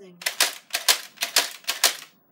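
Nerf Flip Fury blaster's plastic mechanism clicking in a quick, even run of about ten sharp clicks as it is worked by hand.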